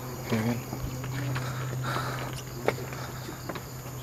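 Night insects chirring steadily, over a steady low hum, with a few footsteps and rustles from people walking slowly along a forest path.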